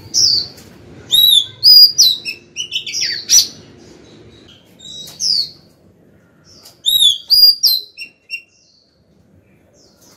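Female oriental magpie-robin singing a calling song: phrases of clear, sliding whistled notes, in a quick run of notes over the first few seconds, a single phrase in the middle, and a second short run about seven seconds in.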